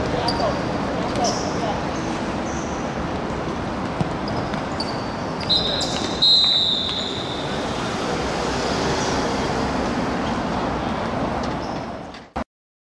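Outdoor football game sounds: players' voices and the odd ball kick over a steady background din, with a long high whistle blast about six seconds in, as a goal is scored.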